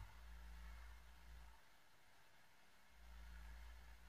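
Near silence: room tone with a faint low hum that swells twice.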